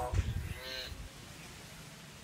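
A caged hill myna calling: a short sliding call right at the start, then a longer, steady pitched call about half a second in, over a few low thumps.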